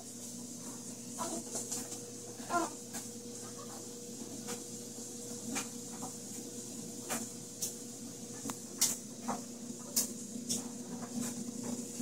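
A steady low hum with scattered small clicks and knocks, and a couple of faint, brief voice-like sounds in the first few seconds.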